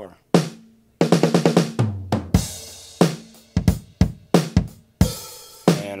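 A programmed drum sequence playing back from an Akai MPC at 90 BPM: kick and snare hits, with two longer hissing cymbal hits.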